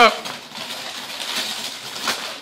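Christmas wrapping paper crinkling and rustling as it is pulled off a present by hand.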